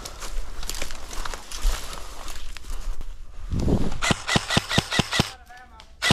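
Dry brush and grass rustling as someone pushes through it. Then an airsoft rifle fires a quick string of about seven shots, some five a second, that puts the opposing player out. A faint voice comes just after.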